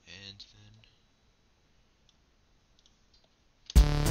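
A brief low murmur of a voice and a few faint mouse clicks, then playback of a synthesizer and drum-machine track starts suddenly and loudly near the end.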